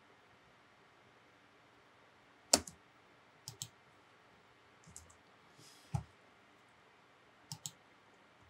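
Computer mouse clicking. One sharp click comes about two and a half seconds in, followed by a handful of quieter clicks, some in quick pairs, with faint room tone between.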